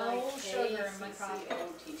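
Indistinct, low talk mixed with light clinking of glassware and bar tools.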